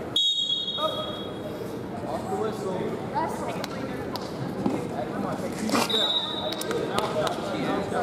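Two short blasts of a referee's whistle, one just after the start and a second about six seconds in, over background voices in a gym.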